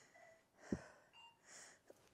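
Faint breathing of a woman exercising on a mat: a few short, soft breaths as she starts curling up from lying flat into a roll-up, with one soft knock a little before the one-second mark.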